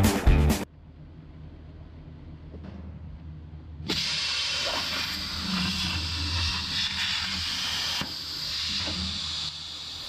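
Guitar music ends in the first second, then a low steady hum. About four seconds in, the plasma torch of a ShopSabre CNC plasma table fires with a sudden loud hiss of arc and air that holds steady while it cuts sheet steel, easing off just before the end.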